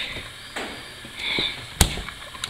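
A drinks refrigerator door swinging shut, with one sharp clack near the end after some faint handling noise.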